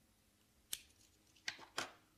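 A cigarette lighter clicking as a cigarette is lit: three short, sharp clicks, one a little past a third of the way in and two close together near the end.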